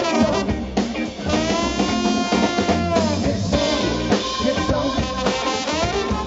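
Live soul-blues band playing, drum kit and guitar to the fore, with a long held note that wavers and bends down between about one and three seconds in.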